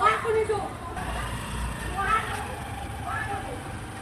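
Street sound from a phone recording: scattered voices of people calling out, with a low vehicle sound passing between about one and two seconds in.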